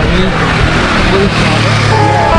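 Loud, steady rushing outdoor noise with faint voices in it; a low steady hum comes in about halfway through.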